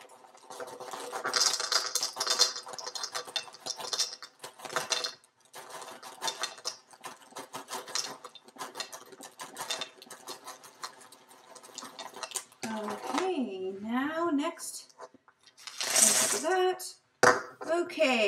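Cheddar fish-shaped crackers pouring from their bag into a measuring cup: a long, dense patter of small crackers with bag rustle. Near the end, a brief, louder rush as the cupful is tipped into a stainless steel mixing bowl.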